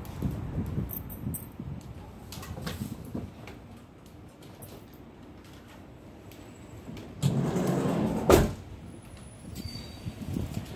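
Street ambience with a low, uneven rumble, then a second of louder rumbling about seven seconds in that ends in a single sharp knock.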